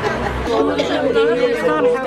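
Several women's voices talking at once, overlapping in chatter.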